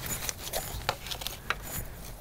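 A small plant being worked out of a thin plastic nursery pot: the plastic crinkling and the root ball rustling, with a few short sharp clicks.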